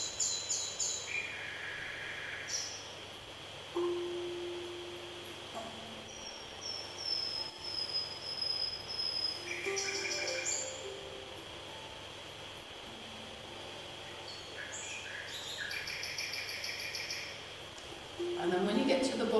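Recorded common nightingale song played back: bursts of rapid repeated high notes, a long high whistle falling slightly about six seconds in, and a few lower held notes between phrases.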